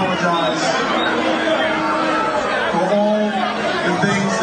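A man's voice speaking over a public-address system in a concert hall, heard from within the audience over crowd chatter.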